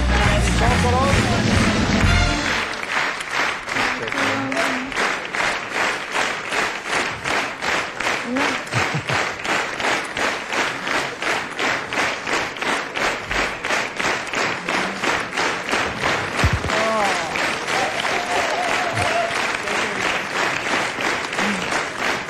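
Studio band playing entrance music for about two seconds, then the studio audience clapping together in a steady rhythm of about two and a half claps a second.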